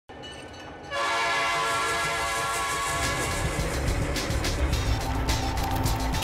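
A train sounds a long, steady, multi-note blast starting about a second in. From about three seconds a low rumble with scattered clicks builds underneath, like a train getting under way.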